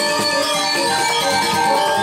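Balinese gamelan music: metallophones ringing out a busy pattern of struck notes over a steady beat.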